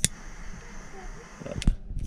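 A handheld lighter's sharp clicks, one right at the start and two near the end, with a low steady hiss between them, as its small flame heats shrink tubing over a soldered wire joint.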